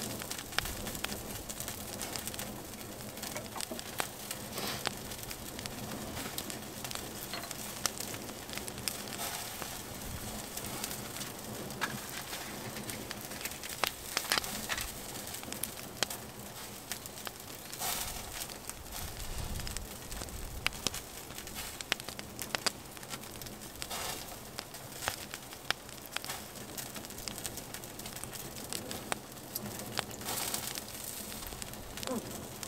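Small open wood fire crackling steadily, with scattered sharp pops.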